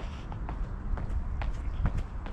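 Footsteps on stone paving, about two steps a second, over a low steady rumble.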